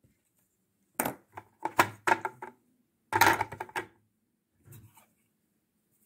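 Plastic puzzle pieces of the Jungle Cache-Cache game being handled and set down on its plastic tray: quick clicks and knocks in three short clusters about a second apart, with a faint one near the end.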